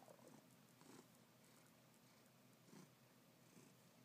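A cat purring very faintly, close to silence, with a few soft swells in the purr.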